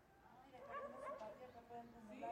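A dog whimpering faintly, a run of high-pitched whines starting about half a second in.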